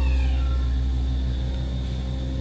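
A steady low mechanical drone with a constant hum, unchanging throughout.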